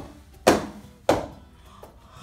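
Sharp percussive hits, evenly spaced about 0.6 s apart, sounding the triple 'cha-cha-cha' beat. The first falls just before this stretch, and two fall inside it, about half a second and just over a second in, each with a short ringing tail.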